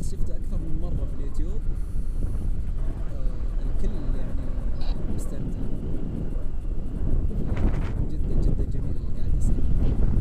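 Airflow buffeting the camera microphone during tandem paraglider flight: a steady low rumble.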